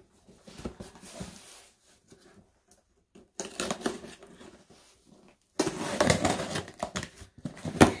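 Box cutter slitting the packing tape on a cardboard shipping box, then cardboard flaps scraping and rustling as the box is pulled open. The rustling is loudest over the last two to three seconds.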